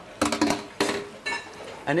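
Kitchen utensils knocking and clinking against pans and a glass bowl: a few separate clinks, one of them ringing, about halfway through.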